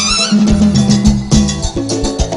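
Cumbia band playing an instrumental passage: a steady bass line under drums and percussion strokes keeping the dance beat.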